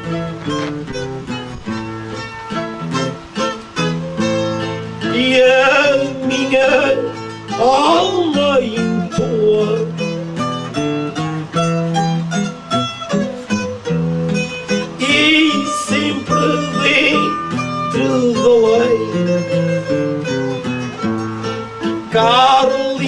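Acoustic guitar playing a continuous plucked melody over a bass line: the instrumental break between the singers' improvised verses of a cantoria.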